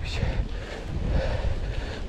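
Steady wind rumble on a chest-mounted action camera's microphone while a mountain bike rolls along an asphalt path.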